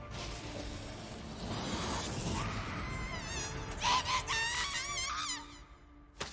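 Anime soundtrack sound design: a dark, low ambient bed, then from about three seconds in several high, wavering whining tones that wobble up and down together, dying away shortly before the end.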